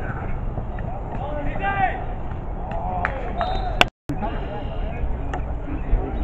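Distant shouting and talking from players across an open field, over a steady low rumble of wind on the microphone. The sound cuts out completely for a moment just before four seconds in.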